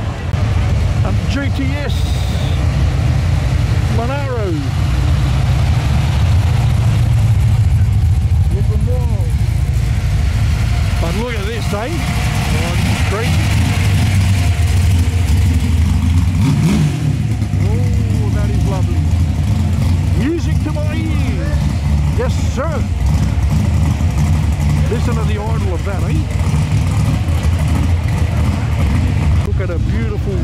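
Loud car engine rumbling steadily at low revs close by, from a modified car on the street, with people's voices over it.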